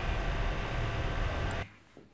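Steady background hiss and hum with no clear tone, which cuts off abruptly about one and a half seconds in and leaves near silence.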